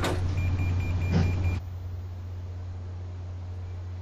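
MRI scanner running: a steady low drone with rapid high-pitched beeping pulses, about five a second. The beeping and most of the drone cut off suddenly about a second and a half in, leaving a fainter low hum.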